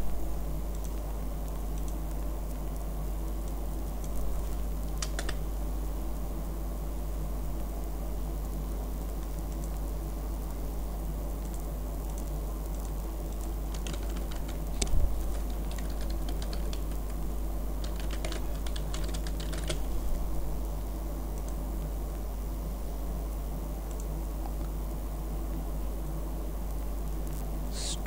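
Computer keyboard typing in a few short bursts of keystrokes: a few seconds in, again around the middle, and once more a little later, over a steady low hum.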